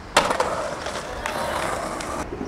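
Skateboard slamming down hard on concrete at the bottom of a stair set, then the board's wheels rolling and clattering across the pavement, with a second hard hit a little past halfway.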